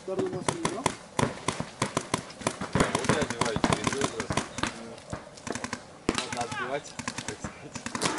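Paintball markers firing irregular rapid strings of sharp pops, mixed with shouting voices.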